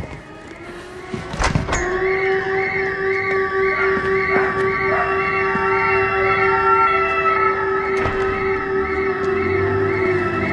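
A single knock, like a door shutting, about a second and a half in. Then a sustained drone from the film score sets in and holds steady, with a high tone warbling quickly and evenly above it, about three times a second.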